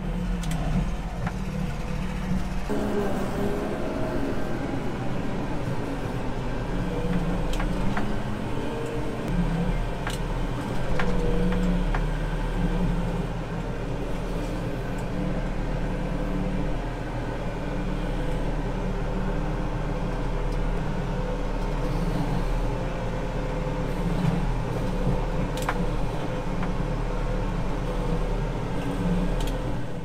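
Manitou telehandler's diesel engine running, heard from inside its cab, its speed rising and falling now and then as the boom works, with occasional clicks and knocks.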